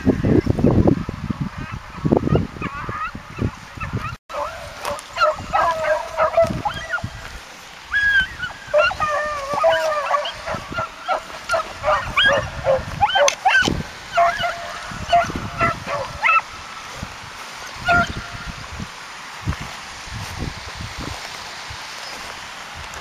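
A pack of beagles in full cry, the hounds giving tongue on a scent. Many overlapping yelping calls come from about four seconds in until about sixteen seconds, with one last call near eighteen seconds. Wind buffets the microphone at the start.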